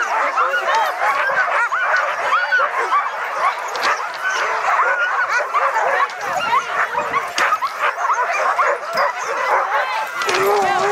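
A pack of tethered sled dogs barking and yipping all at once, a dense, unbroken chorus of many short overlapping calls. It is the excited noise the dogs make while held back from running.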